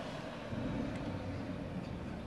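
Steady low rumble of vehicle noise, a little louder from about half a second in.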